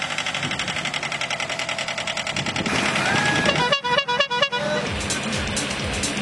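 A vehicle horn sounding a quick run of short toots a little past halfway. Before it there is a fast, even clatter, and music plays in the background.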